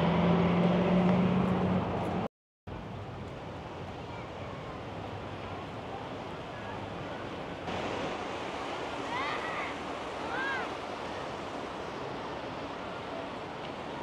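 The steady rush of the San Juan River running fast over rocks. It follows a brief cut, after a couple of seconds of street sound with a low steady engine hum. A few faint high calls rise and fall over the water about nine and ten seconds in.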